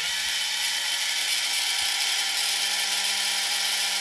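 Small yellow plastic-geared DC hobby motor running steadily at about 240 RPM, a constant whir with gear whine, its slotted encoder disk spinning on the shaft.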